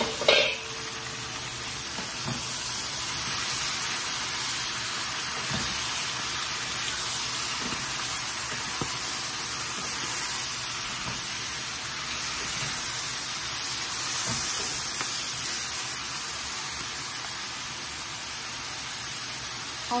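Bok choy and maitake mushrooms sizzling steadily in a hot nonstick frying pan while being stir-fried with wooden spatulas, with a few soft knocks from the spatulas. A single sharp clack comes just after the start.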